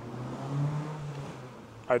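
Low hum of a car on the street, swelling about half a second in and fading away.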